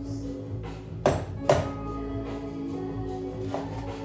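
Background instrumental music throughout, with two sharp chops about a second in, half a second apart: a kitchen knife cutting through a raw chicken onto a cutting board.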